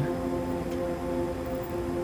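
Soft background music: a sustained chord held steady.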